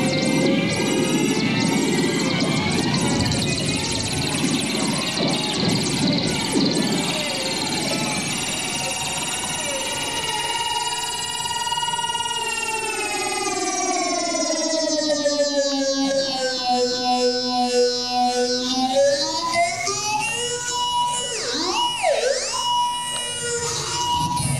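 Electric toothbrush buzzing against a balloon, fed through a phaser and a DigiTech Whammy pitch-shift pedal: a dense buzz turns into a pitched drone that slides down in pitch, then swoops rapidly up and down near the end. It is the effect of a spinning dreidel going out of control.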